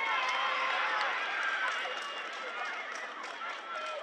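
Several high-pitched young voices shouting and screaming over one another in celebration of a goal, starting suddenly and going on throughout.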